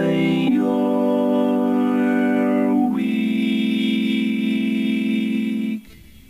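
A cappella voice sung through an Electrix Warp Factory vocoder, giving the word 'My' and then 'you're' as long held, organ-like chords. There are three chords, changing about half a second in and again near three seconds in, and the sound cuts off abruptly just before the end.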